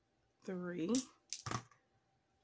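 Three small dice rolled onto a tabletop game board, clattering in a few quick clicks about a second and a half in, just after a counted word.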